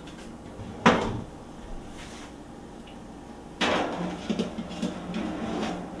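An enamelware roasting pan with its lid on knocks sharply once against metal about a second in. From a little past halfway it scrapes and rattles on the wire oven rack as it is slid into the oven.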